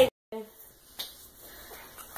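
Quiet room with a sharp click about a second in and a few fainter ticks as playing cards are handled, after a snatch of voice that follows a moment of dead silence at an edit cut.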